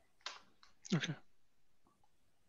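A short spoken "okay" about a second in, heard over a video call, with a faint click just before it.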